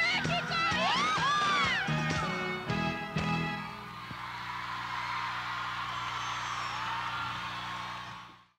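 A live band's pop medley coming to its finish: a few seconds of full-band music with sliding high notes, then a held final chord under steady crowd cheering, fading away at the very end.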